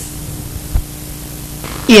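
Steady hiss and electrical hum with a faint steady tone, and one brief low thump a little before the middle.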